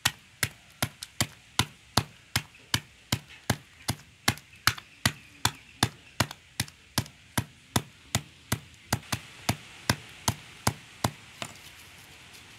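Claw hammer striking mothballs inside a plastic bag on concrete, a steady run of sharp knocks about two and a half a second, crushing the balls to powder. The blows stop about a second before the end.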